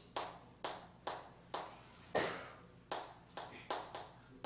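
Chalk writing on a chalkboard: about eight sharp taps as the chalk strikes the board for each stroke, with light scratching between them.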